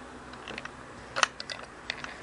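A few light, sharp clicks and taps, a faint one about half a second in and a cluster of stronger ones in the second half: small hard parts being handled on and around the sewing machine.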